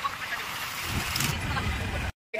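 Riding in an auto-rickshaw through city traffic: steady road and wind noise with engine rumble, the low rumble growing stronger about a second in.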